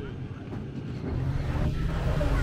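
City street traffic with a vehicle engine running, its low hum growing louder about a second in, under faint voices of passers-by.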